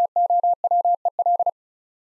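Morse code sent at 35 words per minute as a single steady beeping tone, keyed in short and long elements that spell TOWEL; it stops about one and a half seconds in.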